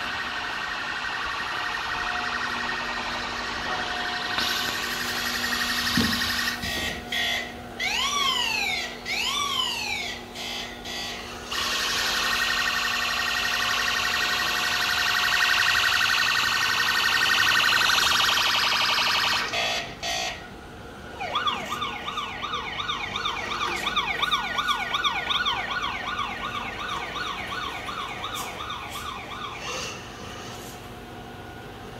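Toy fire-rescue vehicle's built-in electronic siren sounding from its small speaker, changing pattern as it goes. It runs as a steady tone, then gives a few rising-and-falling wails partway through, then a fast warbling yelp near the end.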